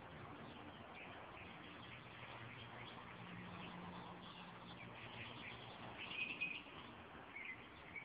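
Faint birds chirping, with a short run of chirps about six seconds in. A faint low hum runs underneath for a few seconds in the middle.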